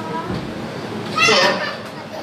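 Speech: a man's voice over a microphone saying "so" about a second in, with a murmur of children's voices in the room.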